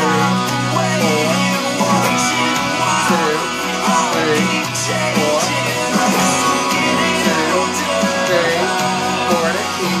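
Electric guitar strummed through a chorus progression of B, E and F-sharp barre chords, steady and continuous, with a voice singing the melody along with it.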